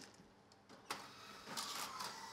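Faint clatter of mahjong tiles being cleared into an automatic mahjong table at the end of a hand, with a sharp click about a second in and a busier clattering near the end as the table's mechanism takes them.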